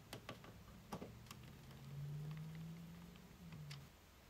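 Faint clicks and ticks of a Phillips screwdriver turning a screw out of a microwave's sheet-metal top panel. A low steady hum runs underneath for a couple of seconds.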